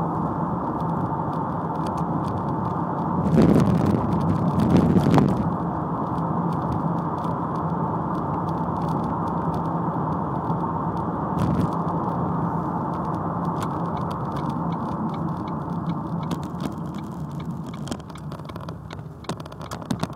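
Ford Mondeo Mk3 heard from inside the cabin: a steady hum of engine and road noise with a low steady engine tone. It swells for a couple of seconds a few seconds in and eases off near the end.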